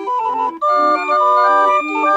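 Calliope barrel organ playing a melody: bright piped notes over chords, with a short break about half a second in, followed by longer held notes.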